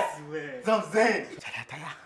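A man's voice laughing and exclaiming, without clear words.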